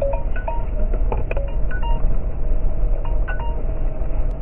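Scattered light bell-like clinks and chimes, a few short rings each second at irregular moments, over the steady low rumble of a jeep on the move.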